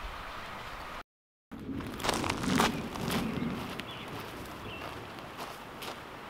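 Footsteps on a dry forest floor of pine needles, dirt and stones, as a hiker walks away. About a second in there is a brief moment of dead silence.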